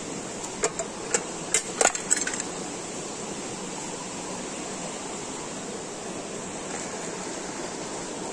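Steady rush of river water, with a handful of sharp clicks in the first two or so seconds.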